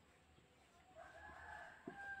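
A faint, drawn-out high tone starts about a second in and holds a steady pitch for about a second and a half, with two soft taps near the end.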